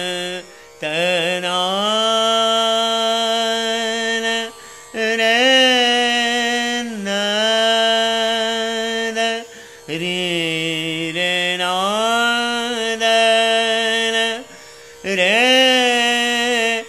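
Male dhrupad vocal alap in raga Bageshri: slow, long-held sung notes, each reached by a slide, in phrases of about four seconds with brief pauses between. A tanpura drone sounds underneath.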